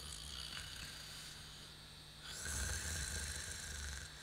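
A man snoring in bed, one drawn-out snore growing louder about halfway through, over a steady low hum.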